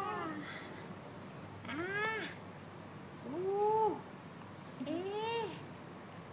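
A baby giving short whiny cries, three in a row about a second and a half apart, each rising then falling in pitch.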